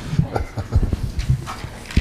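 Handling noise from a handheld microphone being carried and moved: irregular low thumps and knocks, with a sharp click near the end.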